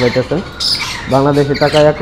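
Caged lories squawking: short harsh calls, with a man's voice talking under them in the second half.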